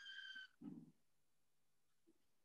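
Near silence: a faint high tone fades out in the first half second, followed by a brief faint low murmur.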